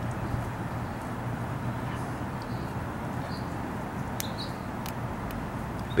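Steady low outdoor background hum, with a few faint ticks in the second half.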